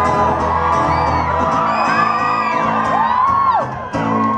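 Acoustic guitar chord ringing under high-pitched screams and whoops from a concert audience, the screams rising and falling in pitch. The guitar fades after about a second and a half, leaving mostly the screaming.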